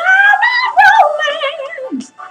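A woman's voice sings one long wordless note, scooping up at the start, held high with a few wobbles, and sliding down at the end.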